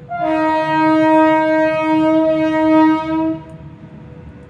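A loud, steady, horn-like tone held for about three seconds, starting a moment in and cutting off before the end.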